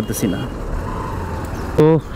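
Motorcycle engine and road noise while riding in traffic: a steady low rumble between two spoken phrases.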